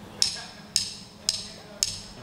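Drumsticks clicked together four times, evenly at about two a second: a drummer's count-in. Together with the two slower clicks just before, it makes a typical "one… two… one, two, three, four" count before the band comes in.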